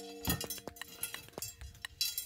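Loose bicycle spokes clinking against each other and the hub as they are threaded into the hub flange while a wheel is laced: a run of light metallic clicks, the loudest about a third of a second in.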